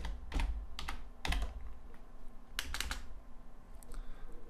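Keystrokes on a computer keyboard as a folder name is typed: a handful of separate key presses, with a quick run of three or four a little past the middle, over a steady low hum.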